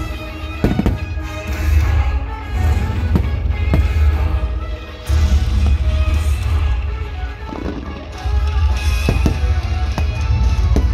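Show music with a heavy bass, with aerial firework shells bursting in sharp bangs about a second in, again at three to four seconds, and twice near the end.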